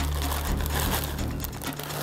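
Plastic pasta bag crinkling as dry fusilli are tipped out of it and fall into a pot.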